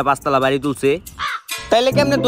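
Background music with a voice-like cawing, as of a crow, in short bursts.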